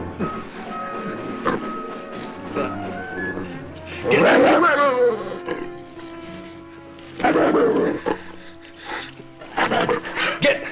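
Orchestral film score with an animal snarling in three loud bursts: about four seconds in, about seven seconds in, and again at the end.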